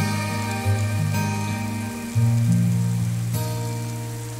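Steady rain mixed with the slow instrumental intro of a Hindi pop song: low held notes that change every second or so, with no singing yet.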